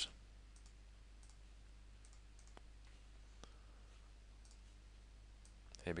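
Faint, scattered clicks of a computer mouse, about half a dozen spread out, over a low steady hum and otherwise near silence.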